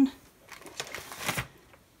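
Cardstock cards rustling and sliding on a cutting mat as one is set down and another picked up: a few soft scrapes about half a second to a second and a half in.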